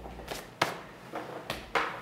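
Handling noise: a few short knocks and rustles, the sharpest about half a second in.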